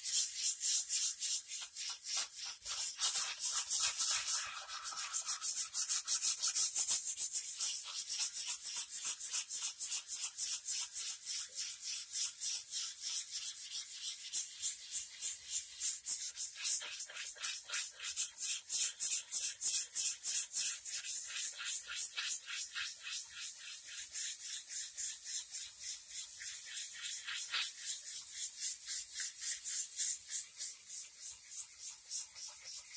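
Hand sanding with 120-grit sandpaper on the painted body of a Squier SE Stratocaster-style guitar: a quick, even back-and-forth rasp of about three strokes a second. The old finish is being scuffed down ahead of filling, priming and repainting.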